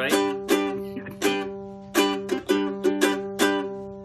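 Ukulele strummed rhythmically, several strokes a second, some strokes accented louder than the rest.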